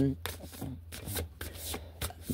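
A deck of glossy cards being shuffled by hand: a run of soft, irregular card slaps and swishes.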